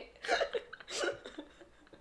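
A woman's soft, breathy laughter in a couple of short bursts, about a third of a second and a second in.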